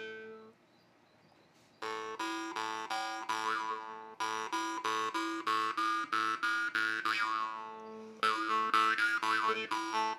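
A Sicilian marranzano (jaw harp) by La Rosa being played: its steel reed is plucked in a quick, even rhythm over a steady drone, while a shifting overtone melody rises and falls. It is silent for about a second near the start, then runs in three phrases.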